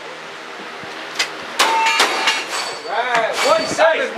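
A quick run of sharp gunshots a little over a second in, the last shots of a cowboy action shooting run. A ringing clang from steel targets follows, and voices start up near the end.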